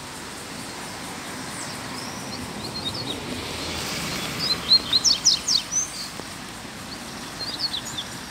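Double-collared seedeater (coleiro) singing in short, very fast, high-pitched phrases. There are three bursts of song, about two and a half seconds, five seconds and eight seconds in; the middle one is the loudest. A steady background hiss runs under the song.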